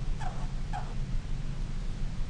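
Marker pen squeaking twice on paper as short strokes are drawn, each squeak brief and falling in pitch, about half a second apart, over a steady low hum.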